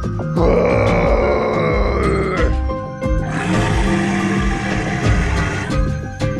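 Two long recorded monster roars over background music, the first falling in pitch, the second about a second after it ends.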